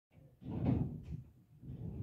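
Two bouts of muffled, low-pitched bumping, the first a little under half a second in and the second about a second and a half in.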